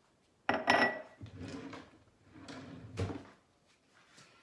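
Kitchen clatter of dishes and utensils: a sharp ringing clink about half a second in, then rummaging and handling noise, with another knock about three seconds in, as a cup is put down and a spatula is picked up.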